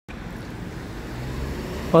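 Road traffic with a bus approaching: a low engine hum over tyre and road noise, growing slowly louder.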